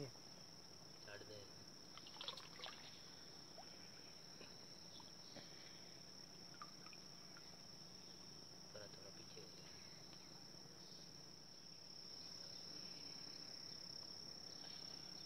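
Quiet: a steady, high-pitched insect drone, with a few faint water splashes and trickles about two seconds in.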